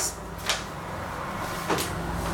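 Two short clicks or light knocks about a second apart over a steady low hum in a small room.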